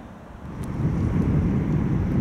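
Low rumble of road traffic passing close by. It swells up about half a second in and stays loud.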